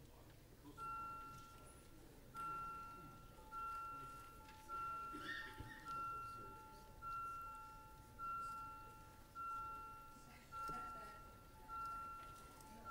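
An electronic chime tone repeating about once a second, each ring lasting most of a second, starting about a second in and briefly pausing before settling into a steady beat. It is the alert of the council chamber's electronic voting system while a recorded vote is open.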